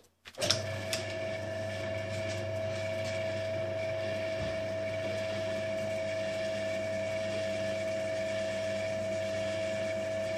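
Benchtop drill press switched on: its motor starts about half a second in and then runs steadily with an even hum and a steady whine.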